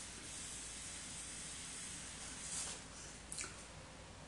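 A long, faint hiss as a pen-style e-cigarette is drawn on, with air pulled through its atomizer. Near the end come a couple of short, louder breathy puffs as the vapour is exhaled.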